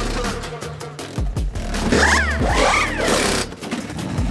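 Background music with a steady low bass, with short gliding tones that rise and fall about two seconds in.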